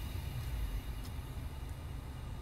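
Steady low hum inside a 2016 Mitsubishi RVR's cabin with the engine idling, and a faint click about a second in.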